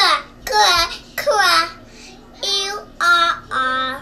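A young child singing in a high voice, with sliding, sing-song phrases in the first half and three held notes near the end.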